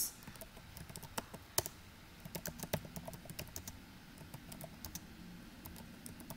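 Typing on a computer keyboard: a run of irregular keystroke clicks, a few per second, with one louder click about a second and a half in.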